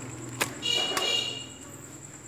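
A sharp click, then a brief buzzing tone lasting about a second, with a low hum underneath.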